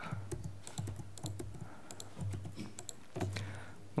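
Typing on a computer keyboard: an irregular run of light key clicks, several a second.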